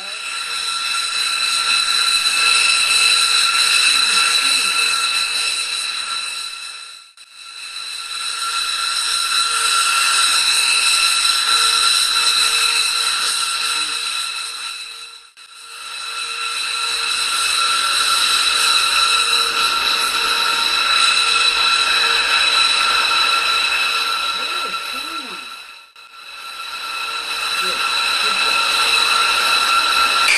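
Steady high-pitched whine of a B-2 Spirit's four turbofan engines running on the ground, over a rushing hiss. It fades out and back in three times as the footage passes from one clip to the next.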